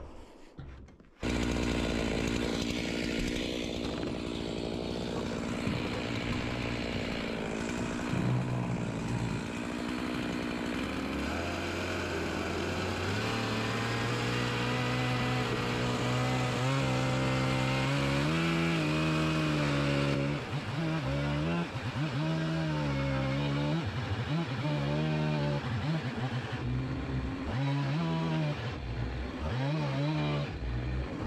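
Gasoline chainsaw running and cutting wood, trimming board ends along the edge of a roof. It starts abruptly about a second in, runs steadily, then its engine pitch rises and falls repeatedly through the second half as it works through the cuts.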